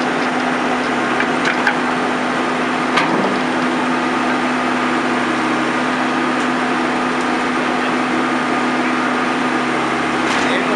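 Diesel engine of a backhoe loader running steadily as its arm breaks into a wooden shack, with a few sharp cracks of splintering boards, the loudest about three seconds in.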